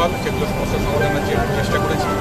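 A man speaking Bengali into a handheld microphone, over steady background noise from the surroundings.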